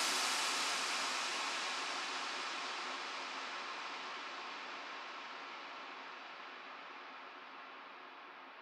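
Noise tail of an electronic dance track after the music stops: a hiss with no beat or pitch that fades away steadily, its top end dulling as it dies.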